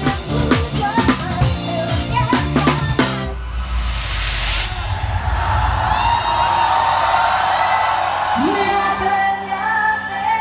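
Pop band rehearsing with a drum kit, guitars and a singer, which cuts off suddenly after about three seconds. Then a large concert crowd, cheering and singing along over a low rumble, with the live band's music coming in near the end.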